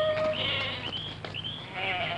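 Flock of sheep bleating, several short calls over about a second, between the held notes of a solo flute melody that breaks off about half a second in and comes back near the end.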